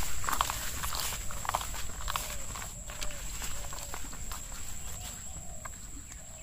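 Footsteps on a wet, muddy path through a rice paddy, with rice leaves brushing against the walker; irregular soft steps and rustles, fading somewhat toward the end.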